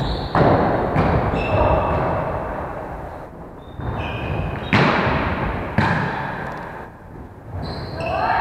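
Volleyball being hit by players' hands and forearms in a large gym hall: several sharp slaps, two close together near the start and two more about five and six seconds in, each ringing on in the hall's echo.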